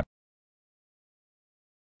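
Silence: the sound track is completely empty.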